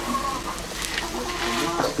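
A chicken calling with short, pitched clucks over the steady sizzle of a pumpkin cake frying in oil in an iron wok.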